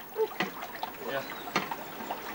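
Pool water splashing and lapping as people move about in a backyard swimming pool, with short splashes about half a second and about a second and a half in.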